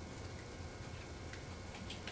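Quiet room tone: a steady low hum with a few faint ticks.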